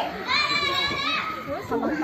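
A child's high-pitched shout, held for about a second, over the chatter and calls of spectators.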